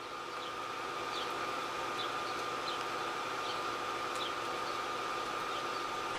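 A steady background hum with a constant high whine running through it, and faint brief high ticks scattered every half second or so.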